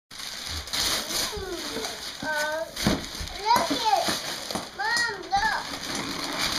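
Wrapping paper rustling and tearing as a large boxed present is unwrapped, with a young child's high-pitched excited calls and squeals several times over it.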